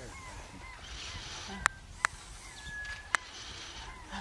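Birds calling: three sharp clicks, the second about half a second after the first and the third about a second later, with a short clear whistled note between the second and third.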